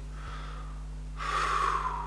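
A man taking a deep breath through his mouth: faint air at first, then a louder rush of breath from a little past halfway for most of a second.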